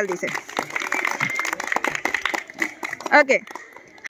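A group of children clapping their hands together: a quick, irregular patter of claps that thins out and dies away after about three seconds.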